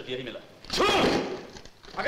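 Speech only: film dialogue, with one loud spoken phrase about a second in.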